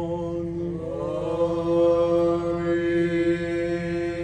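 Greek Orthodox Byzantine chant by male chanters: one voice holds a steady drone note while another sings a slow, ornamented melodic line that enters and rises about a second in.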